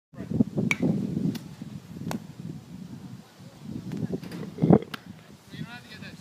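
Indistinct voices, with several sharp clicks scattered through, the strongest a little before the end.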